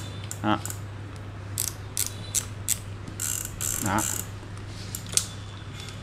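Large Sportsmatic-X 5000 spinning fishing reel being worked by hand, its bail, rotor and drag mechanism giving a series of irregular sharp clicks and ratcheting sounds as the handle is cranked.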